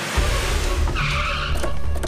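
A car's tyres squealing as it pulls up, about a second in, over dramatic background music with a deep bass rumble.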